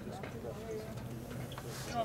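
Indistinct chatter of nearby spectators, too faint to make out words.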